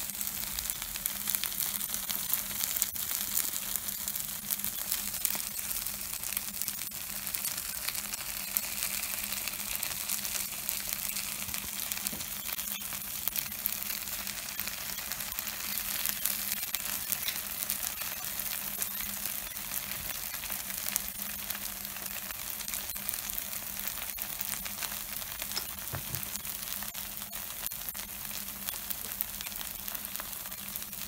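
Takoyaki batter balls sizzling in oil in a takoyaki plate: a steady crackling hiss.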